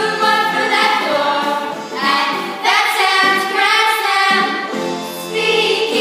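A small group of children singing a musical-theatre song together, in continuous sung phrases.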